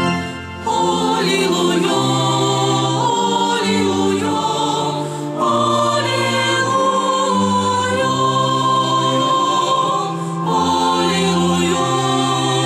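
Choir singing with organ accompaniment. Sustained bass notes change about once a second under the voices, with short breaks in the singing near the start, about five seconds in and about ten seconds in.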